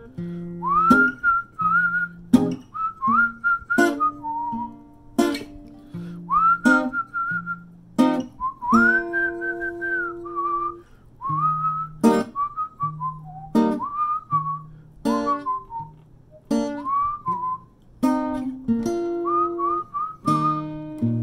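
A person whistling a melody over an acoustic guitar. The whistled tune slides up into its notes in short phrases, while the guitar strums a chord every second or so and lets it ring.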